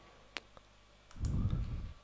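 Computer mouse clicks: two sharp clicks about a fifth of a second apart, then a few lighter ones. A low, muffled rumble of under a second follows near the end and is the loudest sound.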